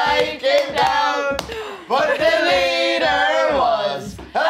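A group of voices singing or chanting together in long, held notes. There is a short break about halfway, and the pitch falls away near the end.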